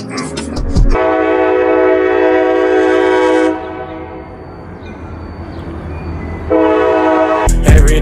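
CSX freight locomotive's air horn sounding a chord of several notes in two blasts: a long one starting about a second in, and a shorter one near the end. The train's low rumble runs underneath.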